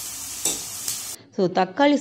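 Chopped onion and tomato sizzling in hot oil in a stainless steel kadai, stirred with a metal spatula that scrapes the pan. The sizzle cuts off suddenly a little past halfway, and a voice follows.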